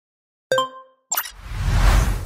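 Logo-animation sound effects: a short, bright plucked ding about half a second in, then a quick swish about a second in and a swelling whoosh with a deep rumble that builds to its loudest near the end.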